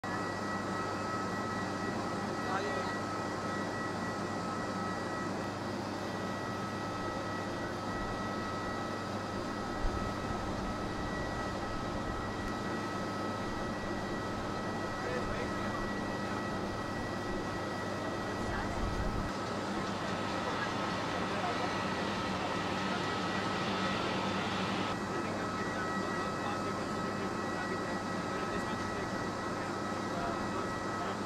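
Airfield ambience: steady distant aircraft engine noise with a constant low hum and faint high whine. A rush of noise swells about two-thirds of the way through and cuts off a few seconds later.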